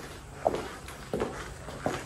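Footsteps of shoes on a tiled floor: three evenly paced steps, about 0.7 s apart.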